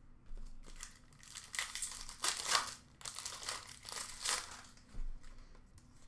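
Foil trading-card pack wrappers crinkling and tearing as a pack is ripped open and the cards are pulled out, in a run of short rustling bursts.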